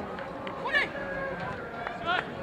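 Footballers shouting and calling to each other on an outdoor pitch during play, with one sharp shout a little under a second in and a short knock near the end.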